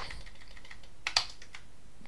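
A few keystrokes on a Commodore 128's keyboard, two of them close together about a second in.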